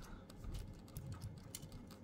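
Faint, scattered clicks and scrapes of a screwdriver working a brass terminal screw on a telephone's terminal block, fastening a wire under it.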